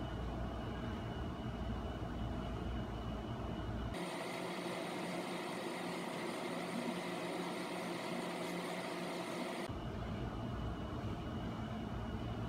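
Steady hiss and hum of room tone, with no distinct knocks or thuds. The sound changes abruptly about four seconds in, turning thinner and brighter, and switches back near the end.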